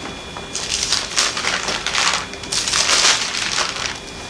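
Thin pages of a Bible being leafed through: a run of papery rustles and swishes that starts about half a second in and keeps going until just before the end.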